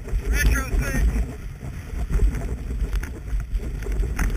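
Skis running over packed snow, heard through a knee-mounted action camera with wind buffeting the microphone: a steady low rumble and scrape. About half a second in, a brief high, voice-like call.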